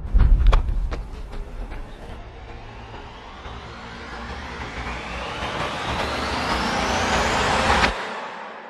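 A few sharp hits in the first two seconds, then a rising whoosh sound effect that sweeps steadily up in pitch and grows louder for about six seconds before cutting off suddenly near the end.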